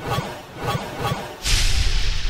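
Sharp whip-like hits about every half second, then a loud whoosh about one and a half seconds in: produced sound effects for a title-graphic transition.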